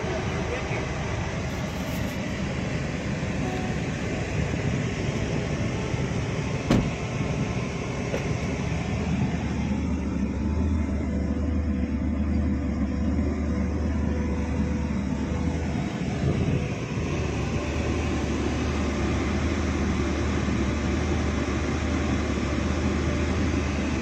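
Car idling, heard from inside the cabin: a steady low engine hum under a hiss, with a single click about seven seconds in.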